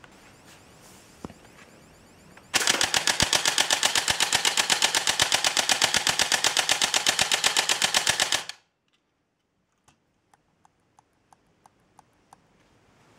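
Homemade airsoft turret's electric G36 gearbox firing BBs on full auto: one rapid, even burst lasting about six seconds, starting a couple of seconds in and cutting off suddenly. A few faint scattered ticks follow.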